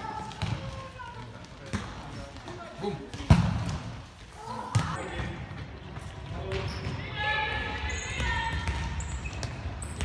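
Futsal ball being kicked and struck on an indoor court, giving sharp knocks, the loudest a little over three seconds in, among players' voices in a sports hall.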